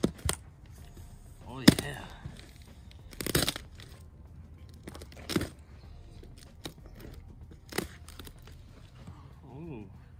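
A large cardboard box being opened by hand: packing tape ripped and stiff cardboard flaps pulled back in several short tearing, crunching bursts, the longest about three seconds in. Brief low voice sounds come in between.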